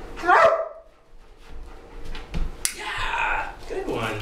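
A German Shepherd dog barks once, loud and short, falling in pitch, just after the start. A sharp click comes later, followed by a longer voiced sound.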